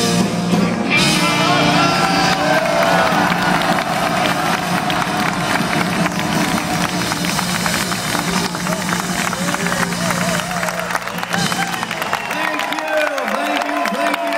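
A live rock band's music sustains while the concert crowd cheers and claps over it. The band stops about twelve seconds in, leaving the crowd's cheering and applause.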